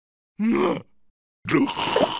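A cartoon larva's short wordless vocal grunt. After a brief gap, a busier run of wordless cartoon voice with sound effects starts about a second and a half in.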